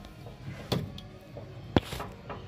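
Handling knocks as a camera is moved into position: a light knock a little under a second in and a sharper, louder one near the end.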